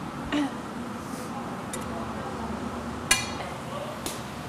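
Steady roar of a glassblowing studio's gas-fired glory hole and furnace. About three seconds in there is one sharp clink with a brief ring, like metal tools or a blowpipe striking.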